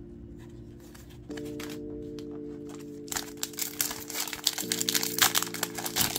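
Foil trading-card pack wrapper crinkling loudly as it is pulled open, starting about halfway through. Soft background music with sustained chords plays underneath.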